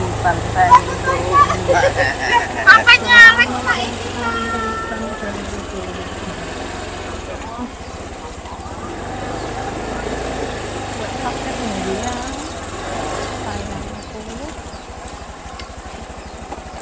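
Indistinct voices of people close by, loudest in the first four seconds, over a low engine hum that fades out after about two seconds; after that a steady, quieter outdoor background noise.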